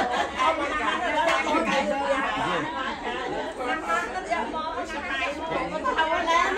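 Several people talking at once: overlapping chatter.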